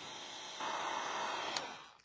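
Small handheld hair dryer blowing steadily. It gets louder about half a second in and fades out near the end as it is taken away.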